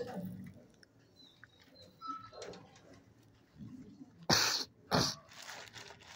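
A dog making two short, loud, noisy sounds about half a second apart, a little over four seconds in, over faint background sound.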